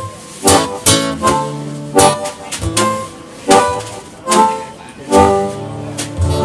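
Live acoustic guitar strummed in a steady rhythm, with a harmonica playing held notes over it.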